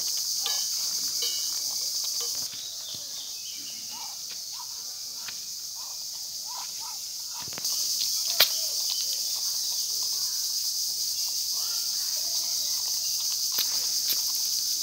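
Steady high-pitched drone of insects, cicadas or crickets, from the surrounding vegetation. It drops quieter for about five seconds and comes back, with a single sharp click about eight seconds in.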